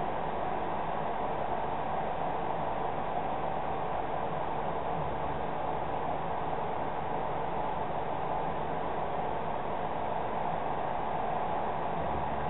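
Steady, even hiss of background noise with no distinct sound events.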